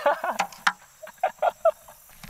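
A man laughing in short excited bursts, a quick cluster at the start and four more short ones about a second in.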